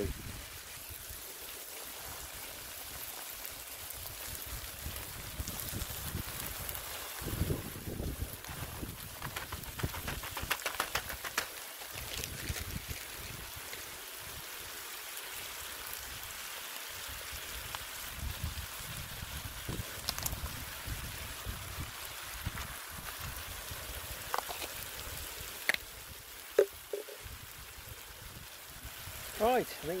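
Steady sizzling of chicken frying in a steel pan over a high-pressure propane burner, with clusters of clatter and crackle a few times as frozen stir-fry mix and peas are tipped in and stirred. Wind rumbles on the microphone.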